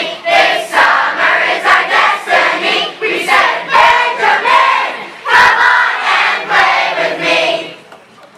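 A large group of children singing together in unison, loud and strongly rhythmic, breaking off just before the end.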